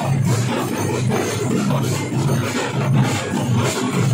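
A troupe of double-headed barrel drums beaten with sticks, playing together in a steady, driving rhythm.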